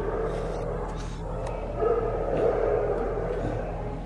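Shelter kennel background: dogs vocalizing faintly over a steady low hum, with a slightly louder call about two seconds in.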